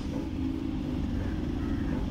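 Steady low rumble of stopped traffic, with the engines of a truck and cars close by idling.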